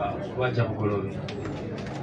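A man's voice, low and indistinct off the microphone, for about a second near the start, over quiet background chatter.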